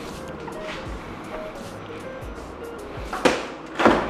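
Soft background music, with two short thumps near the end as the refrigerator door is swung shut.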